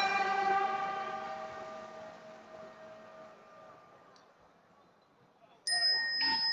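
Music of a temple sutra-chanting ceremony fading out: several held tones die away steadily over about four seconds into silence. Near the end a new sound starts abruptly with a high steady tone.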